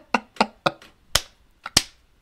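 A man's laughter tailing off in short, breathy bursts that fade in the first second, then two sharp clicks about half a second apart.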